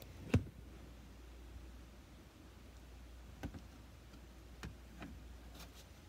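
Handling noise from the camera being moved closer: one sharp knock about a third of a second in, then a few fainter clicks and knocks later on. A low steady hum sits underneath.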